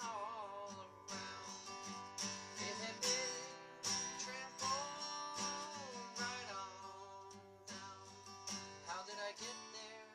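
Acoustic guitar strummed in a steady rhythm, with a man singing a melody over it in several phrases.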